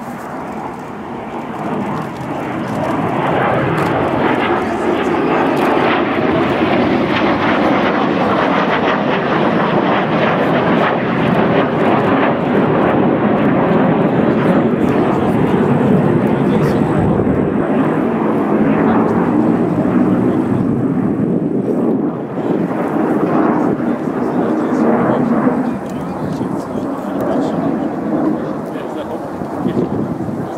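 Two Yakovlev Yak-130 jet trainers flying a display pass. Their twin turbofan engines make loud, steady jet noise that builds over the first few seconds and eases somewhat near the end.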